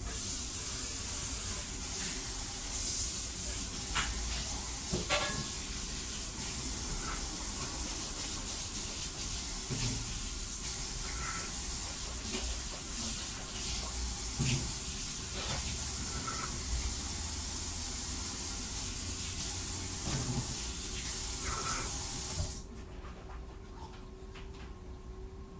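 Water running steadily from a tap, with a few faint clinks over it; it stops suddenly about 22 seconds in.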